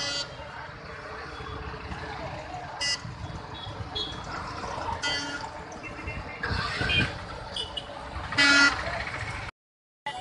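Busy roadside noise with a crowd murmuring and vehicle horns honking several times, the loudest and longest honk about eight and a half seconds in. The sound cuts off suddenly just before the end.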